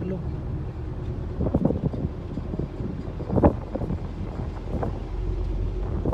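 Wind rumbling on the microphone while a car approaches slowly over a broken, potholed cobbled road; the low rumble grows near the end.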